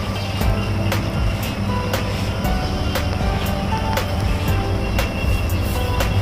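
Background music with a steady beat of about two strikes a second over sustained notes.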